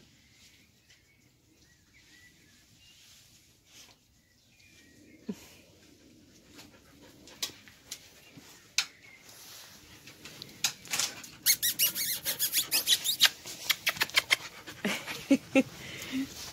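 Australian Shepherd puppies squeaking and yipping as they play. It is very quiet at first, and the short, high squeaks grow busier and louder over the second half.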